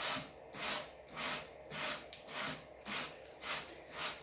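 150-grit sandpaper on a sanding block rubbed back and forth along the edge of a wooden drawer front, in rhythmic strokes a little over two a second. The strokes are cutting through the overhanging decoupage paper to leave a clean edge.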